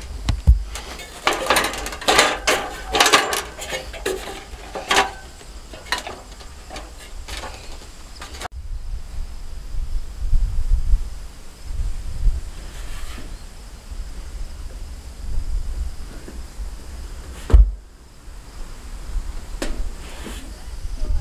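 Aluminium extension ladder clattering and knocking as it is climbed, dense irregular knocks for the first several seconds. After a sudden break, wind rumbles on the microphone, with one sharp knock near the end.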